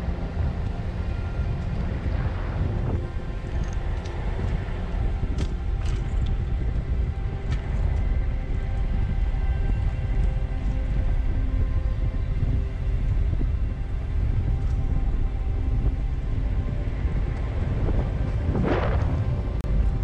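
Minibus driving along a forest road: steady low road rumble and wind buffeting on an outside-mounted microphone, with a brief swell near the end.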